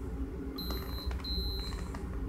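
FreeStyle Lite blood glucose meter beeping twice, two short high steady tones about half a second apart, as the meter finishes the test and shows its blood-sugar reading.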